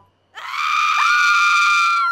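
Two voices screaming in fright. After a brief silence, one long, high-pitched scream starts, and a second scream slides up and joins it about a second in.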